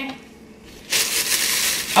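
A dry, crunching rustle of a paper bag of granulated sugar being handled, starting about a second in.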